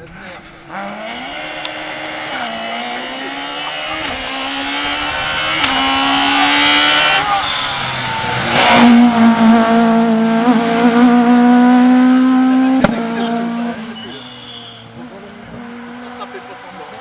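Rally car engine revving hard as it approaches, its pitch climbing and dropping back at each upshift, then held at high revs as it passes close. There is a single sharp crack about thirteen seconds in, and then the engine fades away.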